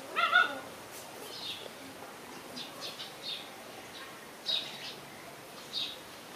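Puppies play-fighting, with a loud high yelp just after the start and short high squeaks about every second after it.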